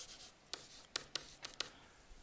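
Faint taps and scratches of a stylus writing by hand on a tablet screen, with several short ticks in the second half.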